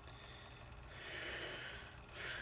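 A single breath by a man close to the microphone, about a second long, over a faint steady low hum.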